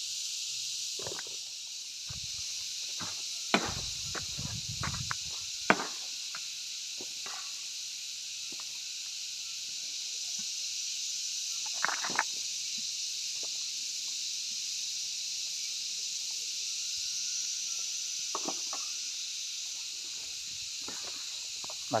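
Steady high-pitched drone of insects, with a few scattered light knocks and scuffs on stony ground.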